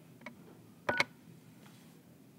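A key on an Avaya 1416 desk phone's keypad pressed once about a second in: a click, a short keypad beep and a click on release, ending a voicemail recording. A faint tick comes just before it.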